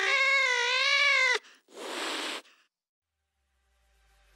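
Backing song on the soundtrack: one long, wavering, meow-like vocal note that cuts off abruptly about a second and a half in, followed by a short hissing burst, then silence as the track breaks.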